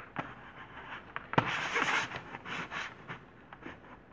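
Faint scraping and rustling handling noise, with a sharp click about one and a half seconds in followed by a brief louder stretch of scraping.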